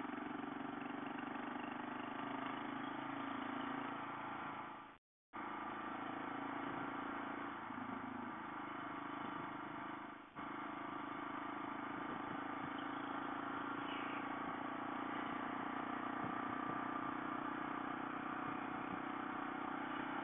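Motorcycle cruising on the highway: its engine runs steadily under wind and road noise. The sound cuts out completely for a moment about five seconds in.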